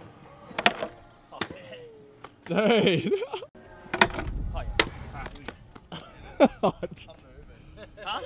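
A stunt scooter on concrete and a portable wooden kick ramp: a handful of sharp clacks and knocks from the deck and wheels hitting the ramp and ground, with a low rumble of wheels rolling about halfway through.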